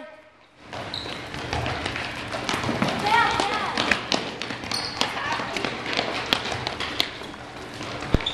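Futsal balls being kicked and dribbled on a hard gym floor: repeated short thuds and taps, starting after a brief moment of quiet, with children's voices in the background.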